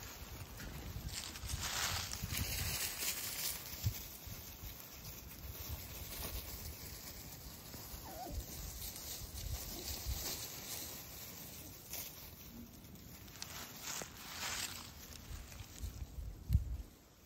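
Dry fallen leaves rustling and crackling in irregular bursts as small puppies scamper and tumble through them, mixed with footsteps in the leaves.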